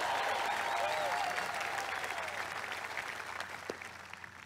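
Audience applauding and cheering, with scattered shouts and whoops, dying down near the end.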